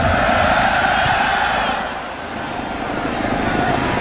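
Stadium crowd cheering through a kickoff, the noise easing a little midway and swelling again.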